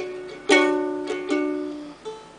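Kamaka ukulele being strummed: a strong chord about half a second in and a lighter one past the middle, each left to ring and fade.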